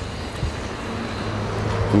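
A vehicle engine idling nearby: a steady low hum under outdoor background noise, growing slightly louder toward the end.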